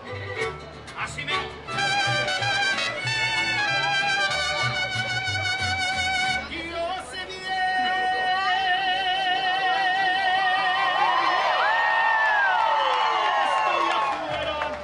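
Live music with singing: held, wavering sung notes over a bass line, then a long final chord over which the crowd cheers and whoops for the last few seconds.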